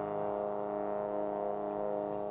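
Big band brass section of trumpets and trombones holding one long sustained chord, with lower notes joining about a quarter second in.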